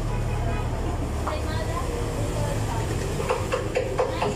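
Steady low rumble of street traffic, with indistinct voices and a few short clicks near the end.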